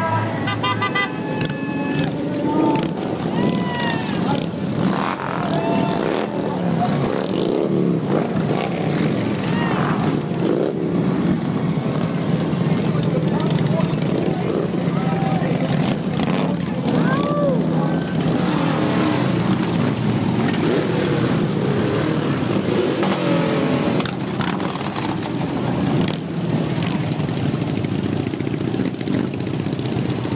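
Many motorcycle engines running together at idle, a steady low mass of sound, with a crowd's voices talking and calling out over it.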